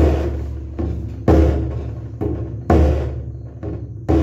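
A caja, the Argentine leather-headed folk drum laced with rawhide, here the Kunturi 'Kaja' model, beaten in a slow steady rhythm. A strong stroke comes about every 1.4 seconds, each followed by a lighter stroke, and the deep head rings out between them.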